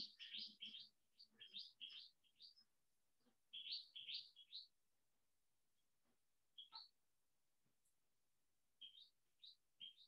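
Near silence with faint bird chirping: short high chirps that come in small quick groups, separated by pauses of a second or more.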